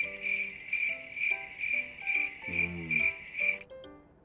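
Cricket chirping sound effect, a high trill pulsing about twice a second over light background music. It cuts off abruptly shortly before the end.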